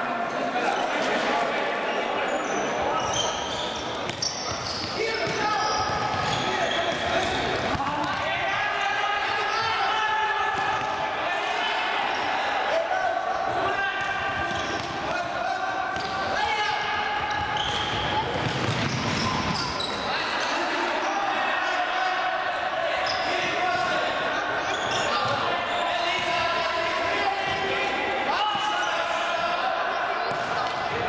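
Futsal match play in a sports hall: a ball being kicked and bouncing on the court floor again and again, with players' shouts and calls, all echoing in the large hall.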